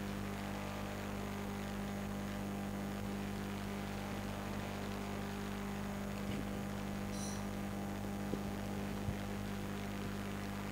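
Steady electrical mains hum, a low buzz with several overtones, with a brief high chirp a little past the middle and two small clicks near the end.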